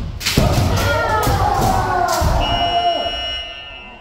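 Kendo sparring in a large hall: several fencers shout kiai while bamboo shinai strike armour and feet stamp on the wooden floor. About two and a half seconds in, a steady high electronic beep sounds for about a second, then fades as the striking stops.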